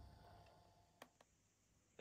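Near silence: faint room tone with a single soft click about a second in.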